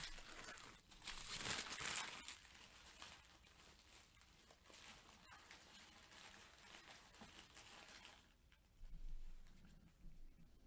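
Faint crinkling and rustling of trading-card foil wrappers and cards being handled, loudest in the first two seconds, with a soft bump near the end.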